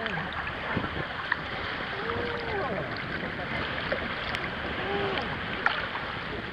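Sea water sloshing and lapping around a camera held at the surface, with a few sharp splashes and drips on the microphone. Faint voices are heard briefly twice in the background.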